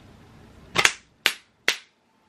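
Three sharp gunshot-like bangs about half a second apart, the first the loudest. After them the background cuts to dead silence, as if a sound effect was edited in.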